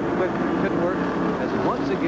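NASCAR stock car V8 engines running at speed on the track, a steady drone with a brief rise in pitch near the end.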